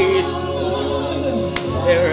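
Gospel music with a choir singing. A held sung note trails off at the start, the music runs on more quietly, and one sharp clap sounds about three-quarters of the way through before the singing picks up again.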